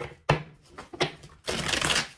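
Tarot cards being shuffled by hand: short snaps of the deck about a third of a second and a second in, then a longer spell of shuffling near the end.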